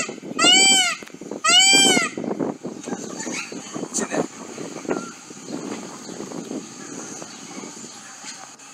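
Male Indian peafowl (peacock) giving two loud calls about a second apart, each rising and falling in pitch.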